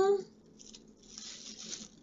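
The end of a drawn-out "uh", then faint rustling as the packaging of a boxed watch is handled.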